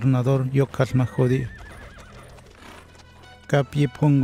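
A horse whinnies with a quavering call about a second in, over dubbed speech. A quieter stretch of horses' hooves on stone paving follows.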